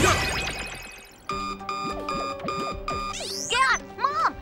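Cartoon sound effects over music: a bright sparkling shimmer that fades away over the first second, then a rapid run of electronic beeps, like a computer alert, for about two seconds, then quick rising chirpy glides near the end.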